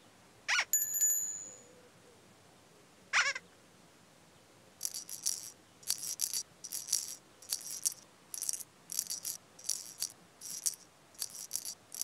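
Cartoon sound effects: a quick rising swoop ending in a ringing bell-like ding, a second swoop a few seconds later, then a steady run of short shaker rattles, about two a second.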